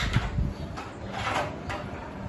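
Handling noises as objects are moved about: a click at the start and a short rustling scrape about a second in, over a low steady rumble.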